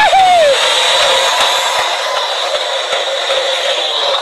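Steady, even noise of workover rig machinery running on the rig floor, preceded by a brief voiced exclamation right at the start.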